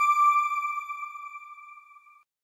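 A single bell-like electronic chime ringing on at one steady pitch and fading away over about two seconds: the sound logo of a news channel's end card.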